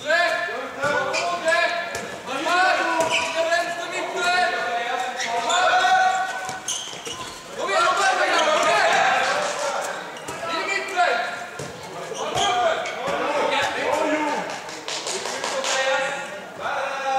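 Handball match sounds in a sports hall: the ball bouncing on the court floor amid voices shouting and calling, echoing around the hall.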